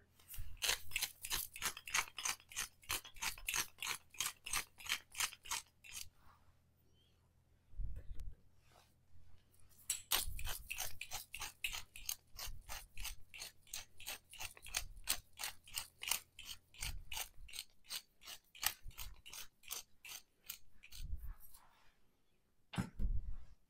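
Hand-twisted salt and pepper mills grinding: quick ratcheting crunches about four a second, in two long runs with a pause of a few seconds between.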